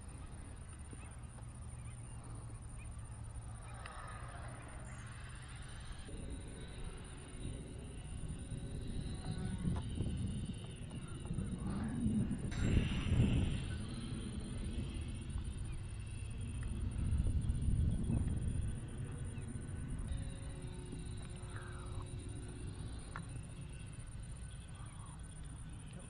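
Wind buffeting the microphone in swelling gusts, with a faint whine from the small RC plane's brushless electric motor and propeller that rises and falls in pitch as the plane flies around.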